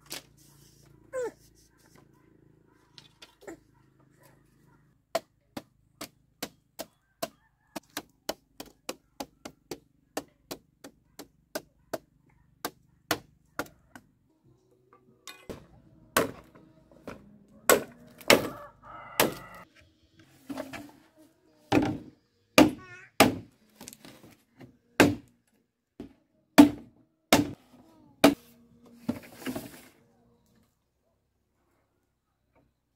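Wooden mallet knocking on a bamboo fence in an even run of sharp knocks, about two to three a second. In the second half a machete chops green bamboo poles in louder, less regular strikes.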